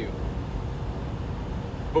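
Steady low rumble of a semi-truck's engine and road noise heard from inside the cab.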